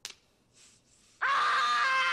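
A young boy's high, sustained scream, starting about a second in after near silence, at the sting of aftershave slapped onto his face.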